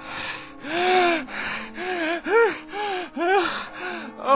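A man gasping and panting hard, about six voiced breaths in quick succession, each rising and falling in pitch, as he comes to in fright from a nightmare.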